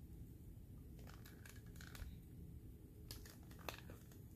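Faint crinkling and scratching in two short clusters, about a second in and again near three seconds. It is a pointed tool pressing dichroic cellophane flat on a stone.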